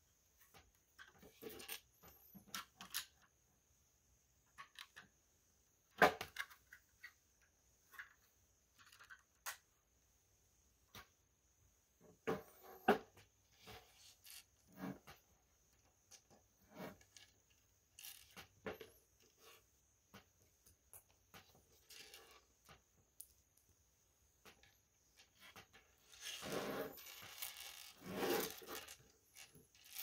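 Plastic LEGO bricks clicking and clattering as pieces are handled and pressed together, in scattered sharp clicks with a loud one about six seconds in. A denser spell of clatter and rustling comes near the end.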